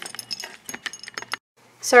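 A quick run of light clicks and small metallic clinks for about a second and a half, like small hard objects being handled and jingling together. It stops shortly before the talking starts.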